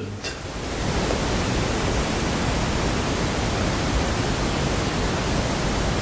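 Steady, even hiss of background noise, with no other sound in it.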